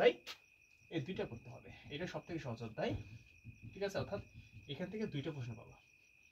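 A man speaking in short, low phrases over a steady high-pitched tone that holds at one pitch throughout.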